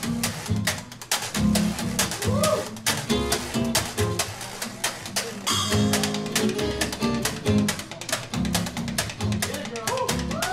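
Washboard played as percussion in a fast, dense clicking and scraping rhythm, with upright bass and acoustic guitar behind it and the horns silent.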